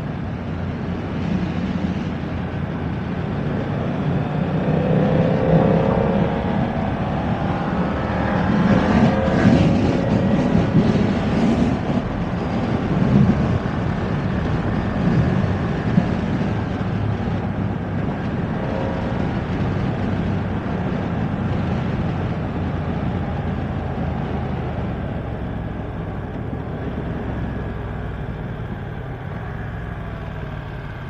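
BMW F900R's parallel-twin engine pulling hard under acceleration, its pitch rising twice in the first ten seconds as it goes up through the gears. It then cruises at speed with rushing wind and eases off near the end as the bike slows.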